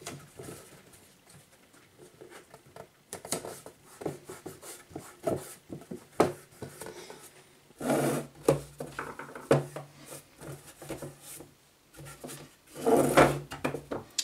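Scattered light knocks, taps and rubbing as a thin laser-cut wooden box with a plastic fan duct is handled and set on a workbench. A low steady hum comes in about eight seconds in.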